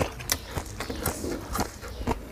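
Chewing a mouthful of crunchy squid salad close to a clip-on microphone: a quick run of wet crunches and mouth clicks, about three a second.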